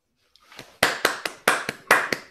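A person clapping hands in congratulation, a quick even run of claps, about four or five a second, starting just under a second in.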